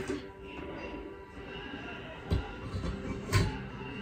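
Two short knocks about a second apart near the end as a ceiling fan's motor housing is worked onto the hook of its ceiling mounting bracket, over faint music.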